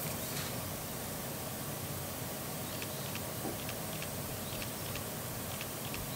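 Steady outdoor background noise, a fairly quiet even hiss, with a few faint short ticks around the middle.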